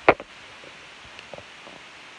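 Handling noise: one sharp knock just after the start, then a few faint clicks and light rustling, as a sneaker and the phone are moved about close together.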